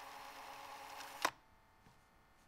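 Faint steady room tone with a light hum, cut off by a single sharp click a little over a second in.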